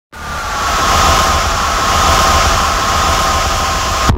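Loud, steady rushing noise with a deep rumble underneath and a thin, slowly falling tone on top. It swells in quickly and cuts off abruptly at the end.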